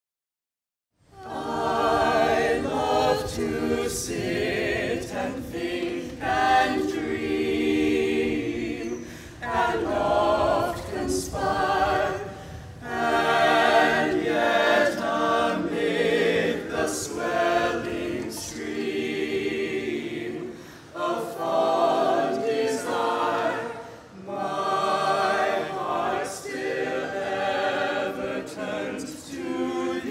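A choir singing in phrases, starting after about a second of silence.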